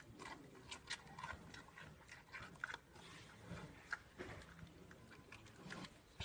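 Giant panda chewing a bamboo shoot: faint, irregular crunching and wet chewing clicks.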